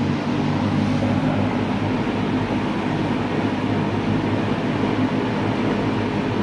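Berns Air King MR20F box fan running steadily on its high speed setting: an even rush of air over a low hum from the motor and blades.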